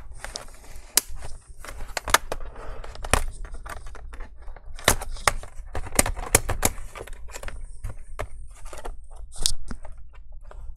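Plastic pry tool working along the edge of an Asus ROG G513QY laptop's plastic bottom cover, giving a run of irregular sharp clicks and snaps as the cover's clips come loose. The clicks come thickest between about five and seven seconds in, with a short scratchy burst near the end.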